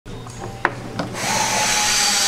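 A machine running steadily with a held whine and a hiss that swells louder about a second in, with a couple of sharp knocks before it.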